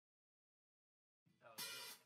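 Dead silence for over a second, then sound cuts in abruptly, with a short, loud hissing rush near the end.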